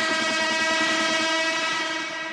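Hard techno breakdown: a long, steady horn-like chord held through, while the fast low pulsing under it fades out about two-thirds of the way in.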